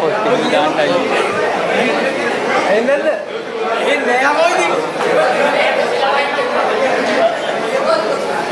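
Several people talking over one another, a steady chatter of voices in a large hall.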